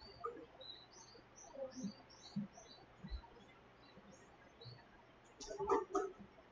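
Faint bird chirping: many short, high chirps scattered throughout. A brief, louder, unpitched sound comes near the end.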